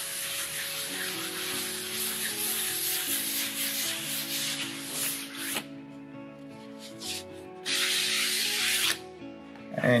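Fine 1000-grit sandpaper rubbed by hand back and forth over a flat wood slab, a steady rasping hiss that stops about five and a half seconds in. A second short stretch of rubbing comes near the end.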